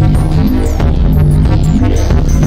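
Loud live electronic music: a dense drone of sustained low bass notes, with short high gliding tones above it.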